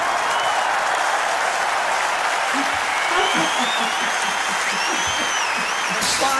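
Huge stadium crowd cheering and applauding in a steady roar, with shrill whistles rising out of it from about two seconds in.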